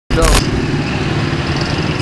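Street traffic noise: a motor vehicle engine running with a steady low rumble close by, after a single short spoken word at the start.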